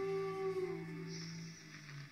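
A Brazilian song heard over mediumwave AM radio from a portable receiver's speaker: a long held note slides down and dies away near the end, leaving a quieter passage.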